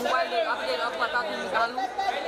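Many overlapping voices talking and calling out at once: a crowd of press photographers chattering and shouting to the people they are photographing.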